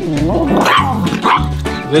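A dog barking twice in the middle, the barks about half a second apart, over background music with a steady beat.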